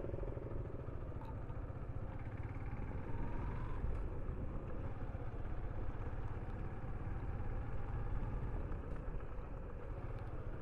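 Motorcycle engine running steadily at low speed while the bike is ridden, under a constant rush of noise.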